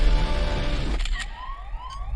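Dense trailer music and rumble that cuts off suddenly about a second in, followed by a repeating rising electronic chirp, about three a second, like a yelp siren.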